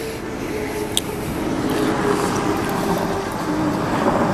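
Road vehicle noise, engine and tyres, growing steadily louder as a vehicle approaches, with a single small click about a second in.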